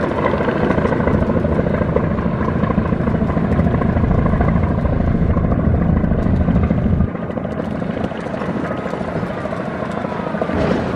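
Steady heavy rumble of a passenger river launch's engines under way, mixed with the hiss and churn of its bow wash. About seven seconds in, the deepest part of the rumble drops away abruptly and the lighter engine-and-water noise carries on.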